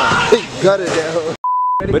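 Voices, then about one and a half seconds in a single steady beep lasting under half a second, with all other sound cut out around it: an edited-in censor bleep covering a word.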